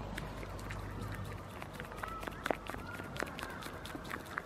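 Scattered light clicks and crackles as a goat is hand-fed peanuts in the shell. They come over a low rumble that fades out about a second and a half in.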